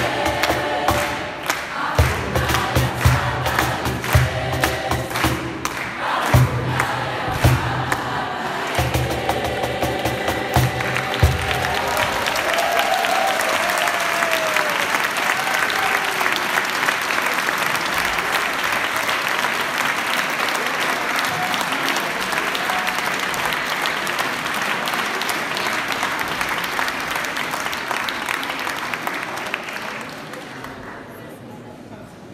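A youth choir singing over a steady beat struck on a cajón; the song ends about eleven seconds in. Applause follows and carries on, tailing off near the end.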